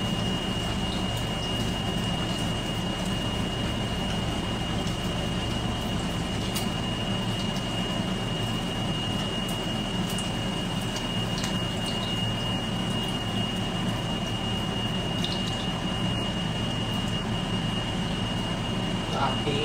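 An egg frying in a pan on a stovetop: a steady hiss and hum through the whole stretch, with a thin steady high whine over it and a few light clicks from a utensil in the pan.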